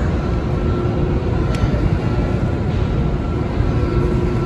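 Loud, steady low rumble of an underground metro station, with a faint steady hum above it.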